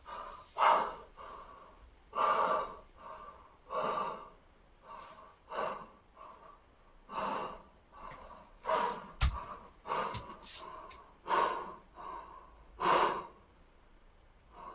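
A man breathing hard, catching his breath after a set of push-ups: about a dozen heavy, gasping breaths roughly a second apart. There is a single sharp click a little past the middle.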